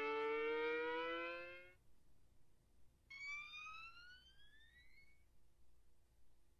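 Cartoon soundtrack effect: a held tone with many overtones, slowly rising in pitch, that stops about two seconds in, followed by a thinner tone gliding steadily upward for about two seconds.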